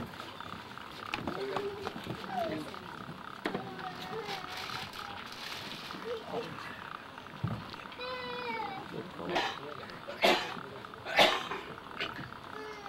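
Low, indistinct voices of several people talking on and around a stage. Near the end come three loud, short bursts about a second apart.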